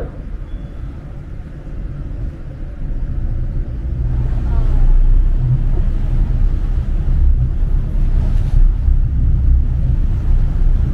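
Passenger boat's engine rumbling low and steady, growing louder about four seconds in as the boat gets under way.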